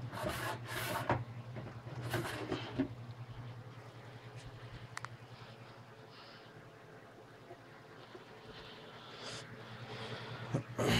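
Clear plastic storage tubs and a lid being handled: two stretches of rubbing and scraping, the first starting right away and the second about two seconds in, a sharp click about five seconds in, then quieter handling.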